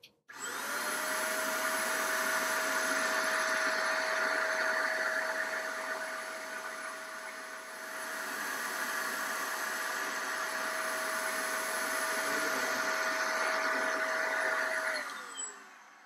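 DataVac electric computer-keyboard duster running: a steady motor whine over a rush of blown air. It starts abruptly, dips briefly about halfway, and winds down with a falling pitch near the end as it is switched off.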